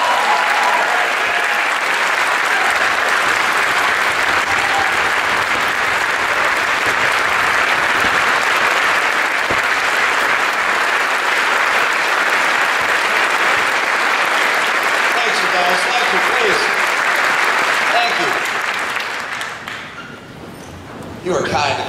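Large audience applauding, a dense, steady clapping of many hands that dies down near the end.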